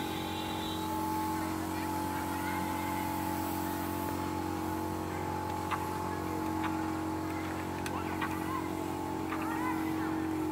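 Concrete mixer's engine running at a steady speed, with a few short knocks of metal partway through.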